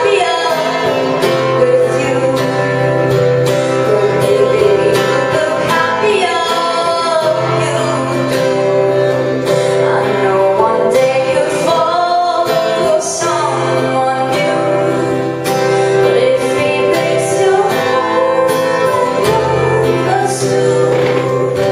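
A woman singing a slow pop ballad to an acoustic guitar accompaniment, performed live.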